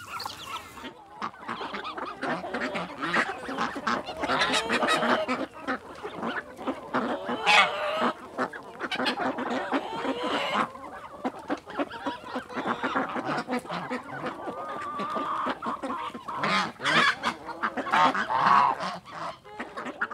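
A flock of farm poultry calling over one another, many loud pitched calls overlapping throughout, with louder bursts in the middle and near the end.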